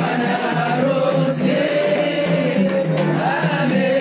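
Many voices singing together with music, the sung chant of a Comorian zifafa wedding procession, going on steadily without a break.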